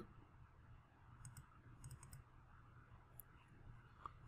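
Faint computer mouse clicks in near silence: a couple of clicks about a second in, a quick run of clicks around two seconds, and one more just after three seconds.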